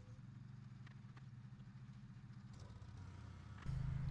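Small engine of a walk-behind sickle-bar mower running steadily, faint and low. Near the end a louder, closer engine hum comes in.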